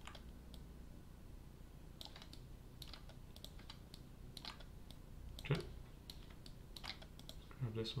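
Quiet, irregular clicks of a computer mouse and keyboard as someone works at a computer.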